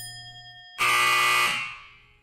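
Countdown timer sound effect: a last tick, then, just under a second in, a loud buzzer sounds for about two-thirds of a second and fades away, marking time up on the sixty-second clock.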